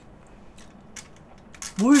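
A few faint light clicks, then a woman's voice starts near the end with a short sound that rises and falls in pitch.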